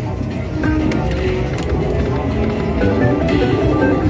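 Music and electronic tones from a Buffalo video slot machine as its reels spin and then stop on a small win, over casino background music.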